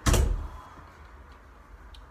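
A single loud thump right at the start, fading within about half a second, followed by quiet room tone.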